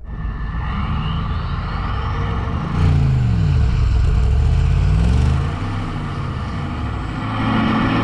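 Mercedes-AMG G63's 4.0-litre twin-turbo V8 working hard under heavy load in low range while pulling against a tow strap. About three seconds in it gets louder, the revs sag and climb back up, then it settles to a steadier note.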